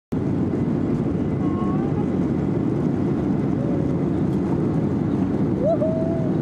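Jet airliner's engines at takeoff power heard inside the cabin: a loud, steady, deep roar as the plane climbs away from the runway.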